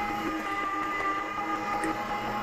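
Electric meat grinder running steadily under load, its motor giving a steady hum-whine with several fixed tones, as chilled elk meat is forced out through the grinder plate.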